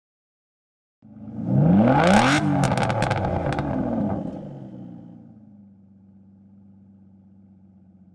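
Car engine revving up sharply with a rapid run of sharp pops at its loudest, then dropping back to a quieter, steady idle.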